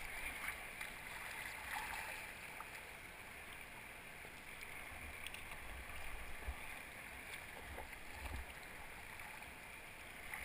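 Steady rush of river water running over shallow rapids close to the boat, with a few low bumps past the middle.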